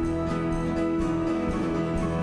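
Church worship band playing an instrumental passage of a hymn: held chords over a steady beat, with no voices singing.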